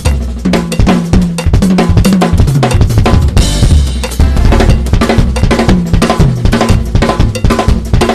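Acoustic drum kit played fast, with dense rapid strokes on the snare, toms and cymbals.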